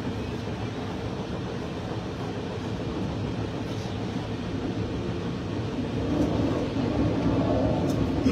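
Steady low rumble of a moving train heard from inside the passenger carriage, growing a little louder near the end.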